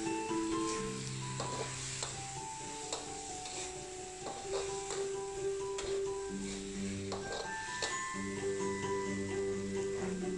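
Background music over a metal spatula scraping and clacking irregularly against a metal wok during stir-frying, with a light sizzle of the food in the pan.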